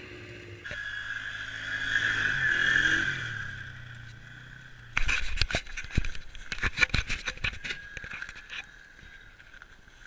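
Snowmobile engine running with a high whine, loudest two to three seconds in, then falling in pitch and fading. About five seconds in, a rush of loud, irregular knocks and wind buffeting, close up on a helmet-mounted microphone.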